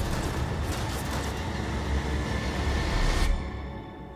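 Film trailer soundtrack: tense music under a loud, dense rushing noise with a deep rumble from an air-combat scene, which cuts off suddenly about three seconds in, leaving a low hum.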